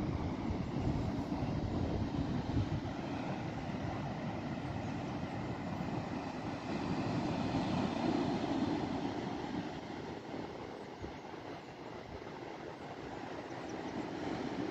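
Ocean surf breaking on a sandy beach, with wind on the microphone: a steady rushing noise that swells about eight seconds in and dips a few seconds later.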